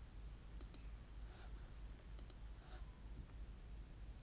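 Faint computer mouse clicks, two quick pairs about a second and a half apart, over a low steady hum.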